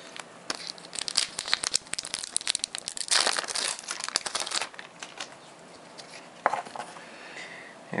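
A foil Pokémon EX Dragon booster-pack wrapper being crinkled and torn open, a dense crackling that runs about four seconds and is loudest past the middle. A few scattered crinkles of handling follow.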